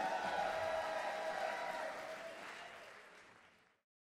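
Audience applauding at the end of a live band's set, fading steadily away to silence about three and a half seconds in.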